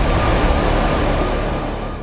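TV news sound-effect sting for a segment graphic: a loud, deep, rumbling whoosh of noise with a faint thin high tone over it, slowly fading toward the end.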